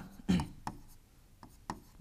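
Stylus tapping and scratching on an interactive whiteboard screen as letters and tick marks are written, with several sharp taps through the middle. A short voice sound comes just after the start.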